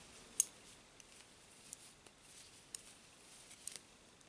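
Metal knitting needles clicking against each other as stitches are worked in wool: a few faint, sharp little clicks spread out, the loudest about half a second in.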